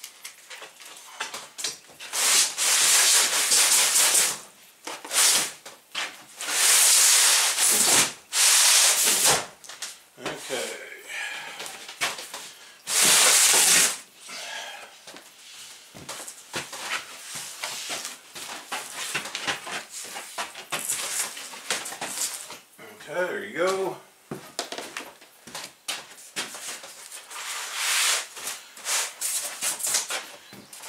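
Plywood cabinet panels, taped together at the corners, being handled and flipped over on the workbench. Several loud scraping bursts, each a second or two long, stand out among smaller knocks and rubbing.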